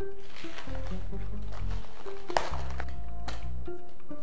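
Instrumental background music: a bass line stepping between held notes under a light melody, with one brief sharp tick a little past halfway.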